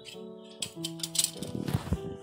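Long steel tailoring scissors clicking and snipping through cotton blouse fabric in a quick series of sharp snaps over the second half, ending in a dull knock. Soft piano music plays underneath.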